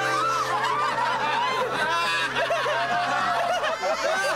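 A crowd laughing, many voices overlapping at once.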